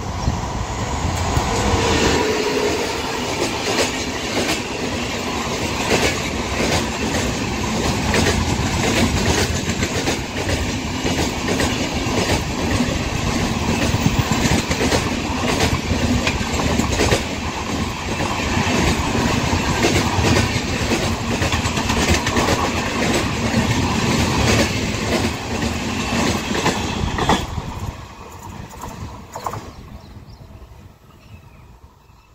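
Express passenger train, hauled by an electric locomotive, passing close by at speed: a steady loud rumble of wheels on rail with fast clickety-clack. It falls away sharply near the end as the last coach goes by.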